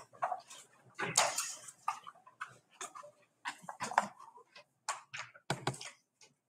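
Scattered soft rustles, clicks and brief faint murmurs in a quiet meeting room, from papers and people moving about at the dais, with a short sound about a second in and another near the end.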